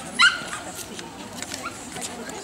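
A dog barks once, a short, sharp, high-pitched yap about a quarter-second in, with voices murmuring in the background.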